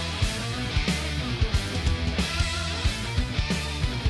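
Hard rock cue playing back: distorted electric guitars over bass guitar and drums, settling into a halftime groove.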